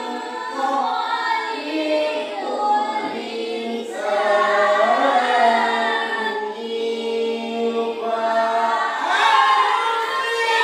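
Children and their teacher reciting Qur'anic verses together in unison, a melodic tilawah chant with long held notes.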